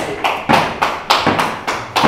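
Heavy battle ropes slammed against the gym floor with both hands: a quick run of sharp slaps and thuds, about seven in all.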